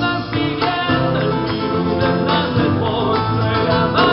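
Live band music: a male singer over guitar and the band, recorded from the dance floor of a large hall.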